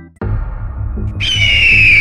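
Background music with a repeating bass line; about a second in, a long, slowly falling eagle screech sound effect comes in over it.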